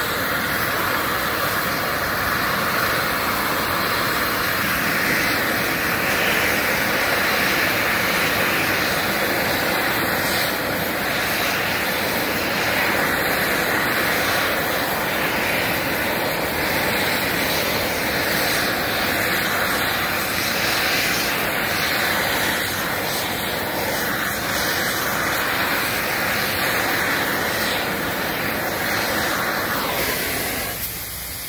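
Gas welding torch flame hissing steadily while it heats and welds two 20A steel pipes laid side by side.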